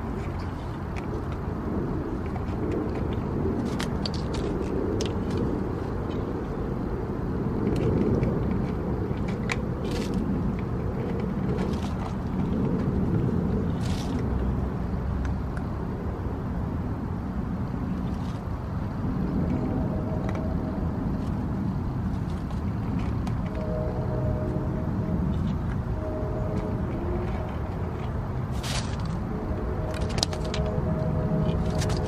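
Steady low rumble with a few faint clicks scattered through it; about two-thirds of the way in, short repeated steady tones join it.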